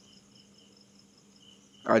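Faint pause with a soft, high-pitched, evenly pulsing trill in the background. Speech comes back in near the end.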